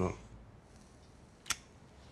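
Quiet room tone with a single sharp click about one and a half seconds in, as a cigarette lighter is flicked.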